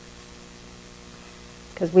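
Steady low electrical hum in a quiet room, with a woman's voice coming back in near the end.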